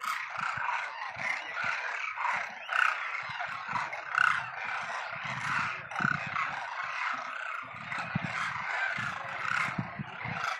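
A large flock of demoiselle cranes calling together: a dense, unbroken chorus of many overlapping calls.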